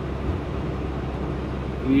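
Kenworth semi-truck's diesel engine running steadily at highway speed, with road and tyre noise, heard from inside the cab.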